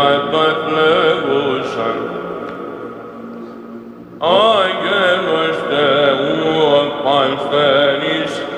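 Byzantine chant: men's voices sing a winding melody over a steady held drone note, the ison. The phrase dies away over the first four seconds, and a new, louder phrase begins just after four seconds in.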